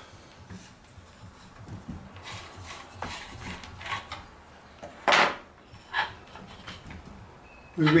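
Majacraft Little Gem spinning wheel's wooden flyer and bobbin being slid off the metal flyer shaft and set aside: light knocks and rubbing, with a sharp clack about five seconds in and a smaller one a second later.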